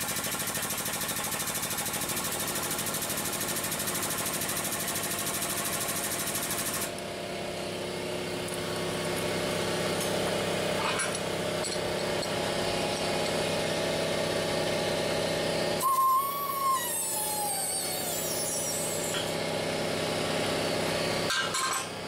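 Air motor of an air-over-hydraulic bottle jack pumping: a fast buzzing rattle for about seven seconds, then a steadier, lower hum, with a short falling whine about two-thirds of the way through.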